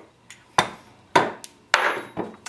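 Metal gunsmithing tools and the carbine's receiver knocking down on a wooden workbench: two sharp knocks about half a second apart, then a longer clatter with a faint metallic ring near the end.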